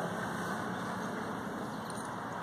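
A vehicle engine running steadily, an even hum with no change in level.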